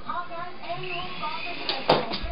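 Soft background talking, with a single sharp knock near the end.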